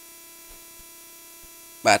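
Low, steady electrical hum in the recording, several fixed tones with no change, with a few faint ticks. A man's voice starts just before the end.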